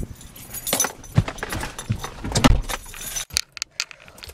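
Keys jangling with many irregular sharp clicks and a few dull thumps as someone gets into the driver's seat of a car; the engine is not running.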